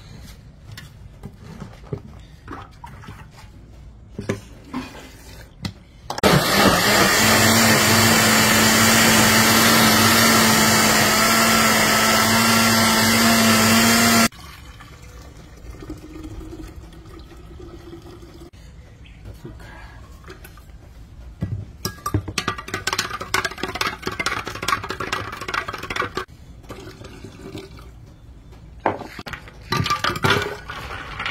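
Countertop blender running for about eight seconds as it blends chaya leaves, starting and cutting off abruptly. Afterwards the green blended liquid is poured through a plastic strainer into a glass pitcher.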